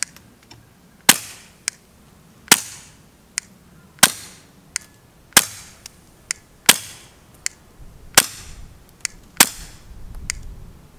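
Taurus TX22 .22 LR pistol fitted with a Dead Air Mask suppressor, fired seven times at a slow, steady pace of about one shot every second and a half. Each shot is a short, sharp pop that dies away quickly, and a fainter click falls between shots.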